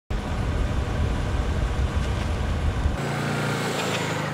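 Motor vehicle running: a heavy low rumble that changes abruptly about three seconds in to a steadier, lower-level engine hum.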